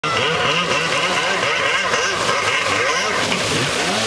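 Stand-up jet ski's ported Yamaha 701 two-stroke twin, run hard and revved up and down over and over, its pitch rising and falling in quick arcs.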